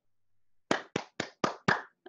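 Five quick hand claps, about four a second, starting just under a second in.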